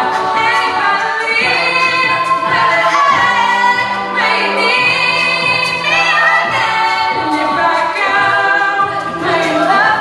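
An all-female a cappella group singing live: a lead voice over close backing harmonies, with held low notes underneath and no instruments.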